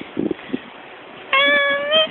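A woman's voice singing one short, high, held note about a second and a half in, lifting slightly at its end. A few soft thumps come just before it.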